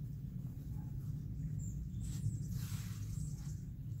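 Soft rustle of yarn being drawn through crocheted fabric by a yarn needle as a stem is sewn on, loudest about two and a half seconds in, over a steady low background hum.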